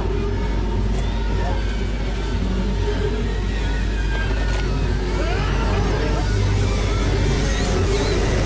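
Horror film soundtrack: a loud, steady low rumble under music, with raised, wordless voices over it.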